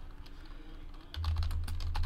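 Typing on a computer keyboard: a quick run of key clicks that starts about halfway through, over a low hum.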